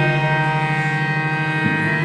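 Harmonium holding one steady chord, the final sustained note of the national anthem, with the sound dying away at the end.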